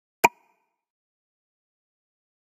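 A single short click-pop sound effect with a brief ringing tone, once, about a quarter second in.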